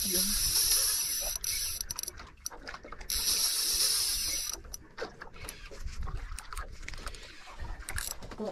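Conventional jigging reel being cranked by hand, its gears and ratchet whirring and clicking: two spells of high-pitched whirring in the first half, then scattered clicks.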